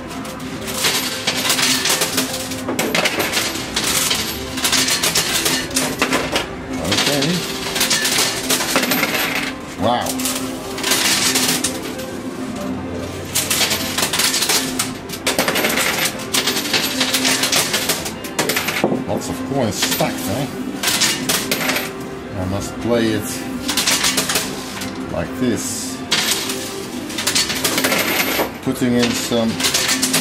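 Coins clinking and clattering in a coin pusher machine, in frequent irregular bursts as coins drop and slide on the metal playfield.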